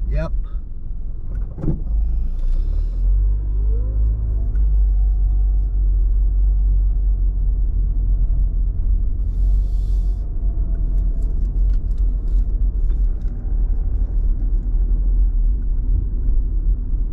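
Car engine and road rumble heard from inside the cabin as the vehicle pulls away from a stop: the engine's pitch rises a few seconds in, then holds steady at cruising speed over a constant low rumble.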